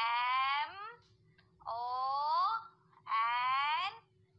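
An animal-call sound effect: long wavering cries of about a second each, repeated roughly every second and a half.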